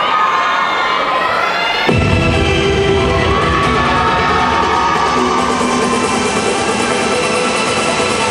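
An audience cheering with high-pitched shouts; about two seconds in, dance music with a heavy bass beat starts and plays on under the cheering.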